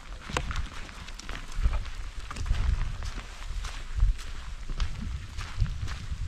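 Footsteps of a person walking along a wet grassy trail: irregular taps and scuffs over an uneven low rumble.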